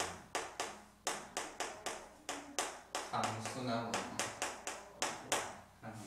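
Chalk writing on a blackboard: a quick, irregular series of sharp taps and short scratches as each stroke hits the board. A man's voice murmurs briefly about three seconds in.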